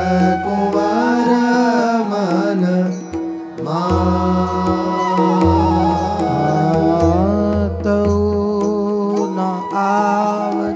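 A voice singing a slow Hindi devotional chant in long, ornamented held notes over a steady instrumental drone, with a short break in the phrase a little after three seconds in.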